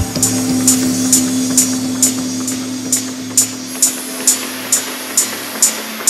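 Techno mix in a breakdown: the kick drum and bass drop out at the start, leaving a held synth drone under sharp hi-hat ticks about twice a second.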